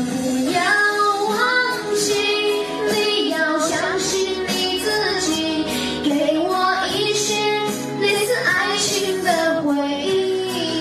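A young male singer's high, clear voice singing a pop song melody, with held notes and slides, over instrumental backing.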